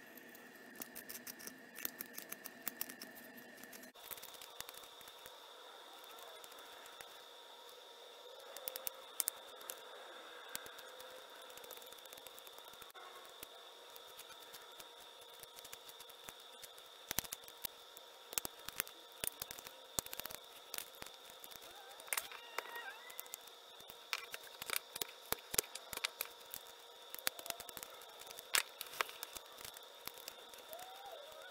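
Flexcut detail knife cutting basswood by hand: a run of short, crisp slicing and scraping cuts, irregular and growing more frequent in the second half. A faint steady high tone hums underneath from about four seconds in.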